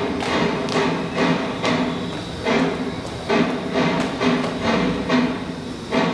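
A drum beating a steady march rhythm, about two to three strikes a second, for a marching flag escort.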